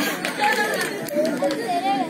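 Several voices talking at once in a low chatter, quieter than the stage dialogue around it.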